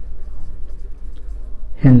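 Marker pen writing on a whiteboard, faint short scratching strokes over a steady low hum. A man's voice starts just at the end.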